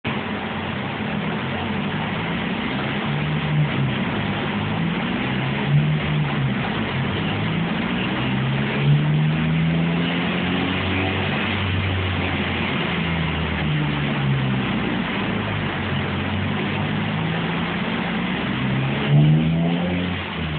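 Honda Integra Type R's 1.8-litre four-cylinder VTEC engine running on a rolling-road dyno, its revs repeatedly rising and falling over a loud, steady rush of noise.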